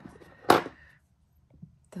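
A sharp clack about half a second in, after a lighter click at the start, as jewelry pliers and the beaded necklace are handled on the work table.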